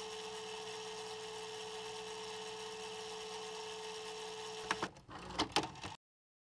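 A steady electronic hum holding one constant mid-pitched tone over a faint hiss, breaking off nearly five seconds in. A few brief clicks follow, and the sound cuts off abruptly.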